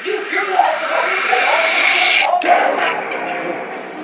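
A loud hiss that swells and brightens over voices, then cuts off suddenly a little over two seconds in; after it comes a drawn-out pitched vocal sound, like a groan, mixed with speech.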